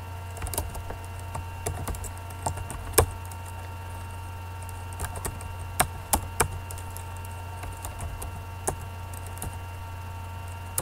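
Computer keyboard keys being typed in irregular bursts of clicks, with a single harder keystroke about three seconds in. A steady electrical hum runs underneath.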